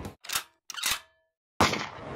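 Edited transition sound effects for an animated logo: two short sharp bursts about half a second apart, then a louder sharp hit near the end that fades away.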